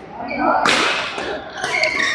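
Badminton rackets hitting a shuttlecock during a rally: a hard, sharp hit about two-thirds of a second in, and a second hit about a second later.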